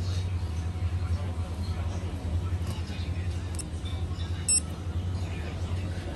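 Shop-floor ambience: a steady low hum with indistinct background voices, and a short high electronic beep about four and a half seconds in.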